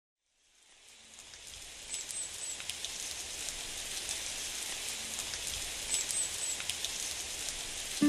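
Steady rain falling, fading in over the first two seconds, with scattered drips and a short run of high chirps heard twice.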